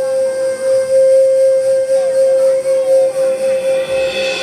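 Music: a flute-like wind instrument holds one long, steady note.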